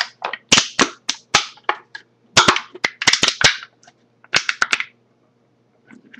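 Aluminium soda can being crushed in the hands, making a quick run of sharp crinkling cracks and pops that stop about a second before the end.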